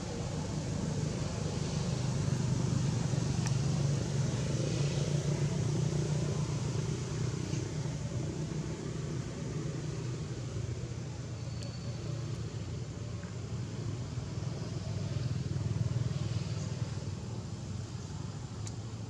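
Steady low engine rumble of road traffic, swelling twice as vehicles pass, with a few faint clicks.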